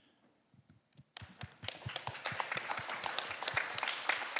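After about a second of near silence, applause breaks out suddenly and grows fuller and denser, with the panelists on stage clapping.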